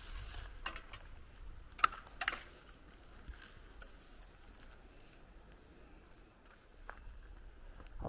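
Bicycles being locked together: a few sharp metallic clicks and a light rattle from the lock and bike frames in the first couple of seconds, the sharpest just under two seconds in, then only faint outdoor background.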